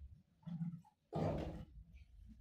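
A man clearing his throat: a short low grunt about half a second in, then a louder, rasping burst about a second in.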